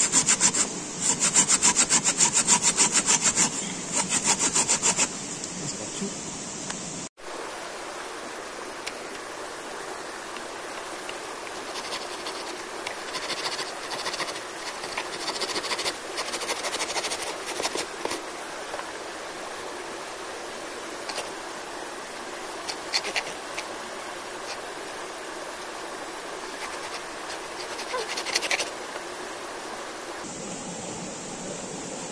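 Hand pruning saw cutting down into an upright wooden log, in quick rhythmic back-and-forth strokes. The strokes are loudest for the first five seconds, then come back quieter in short runs further on.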